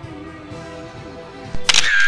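Faint background music, then, about one and a half seconds in, a loud camera-shutter sound lasting about half a second, taking a posed photo.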